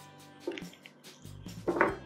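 Soft background music with steady held notes, under a few light taps and rustles from hands handling the felt pieces.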